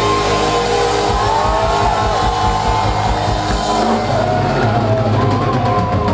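Live heavy metal band playing loud: distorted electric guitars with a lead line sliding in pitch over held notes, bass guitar, and a drum kit driving fast, steady kick-drum strokes from about a second in.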